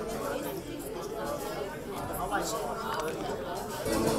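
Chatter of many people talking at once, overlapping conversations among an audience.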